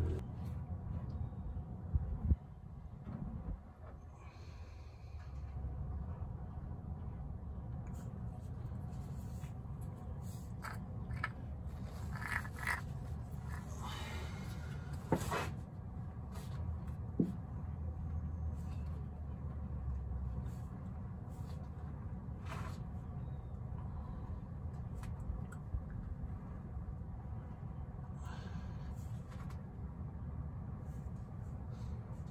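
Old engine oil draining in a steady stream from the oil pan's drain hole into a plastic drain pan: a faint, even pouring noise. A few clicks and knocks of tools being handled break in, the sharpest about halfway through.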